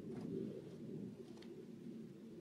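Faint cooing of a dove or pigeon, low and warbling, with two short scrapes of a shovel in soil, one near the start and one in the second half.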